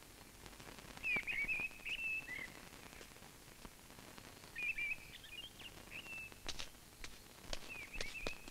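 Birds chirping in three short runs of high, quick calls over faint outdoor ambience, with a few soft clicks between them.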